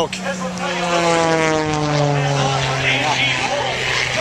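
An aircraft flying past, its engine tone sliding steadily down in pitch as it goes by.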